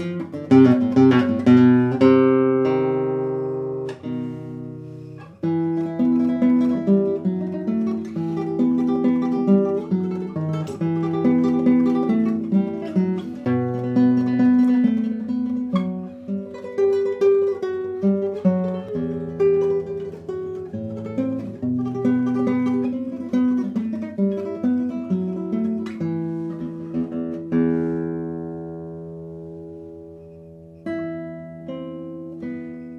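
Solo classical guitar playing a contemporary guitar sonata: struck chords ring and die away over the first few seconds, then a busy line of plucked notes runs from about five seconds in, ending on a chord that fades near the end.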